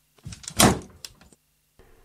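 A door shutting: a few quick knocks and one loud bang about half a second in.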